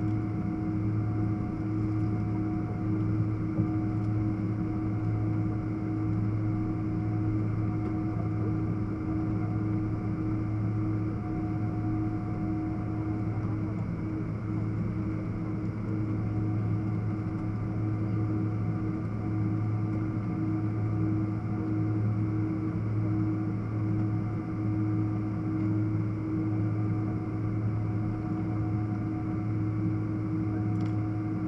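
Steady drone inside a Boeing 777-300ER's cabin while the airliner taxis, made up of the engines at low power and the cabin air system. A constant low hum is joined by a few steady higher tones, one of which fades in and out, with no spool-up of the engines.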